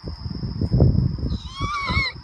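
A sika deer giving a short, high, wavering bleat near the end, after a low rumbling noise on the microphone.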